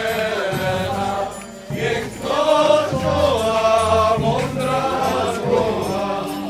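Live Polish folk band playing a mazurka-style dance tune on fiddles with double bass underneath. The music dips briefly about a second and a half in, then continues.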